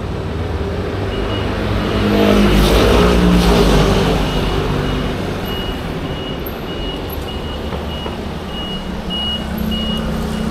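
Street traffic: a motor vehicle passes close, loudest about two to four seconds in, its engine note falling as it goes by, then a steady traffic rumble. Through it a high electronic beep repeats about twice a second from about a second in.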